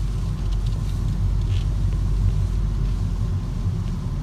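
Steady low rumble of a car driving slowly, heard from inside the cabin: road and engine noise.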